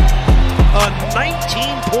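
Hip-hop background music: deep bass kick hits in the first half-second, then a long held bass note with a steady high synth tone over it, under a sports commentator's voice.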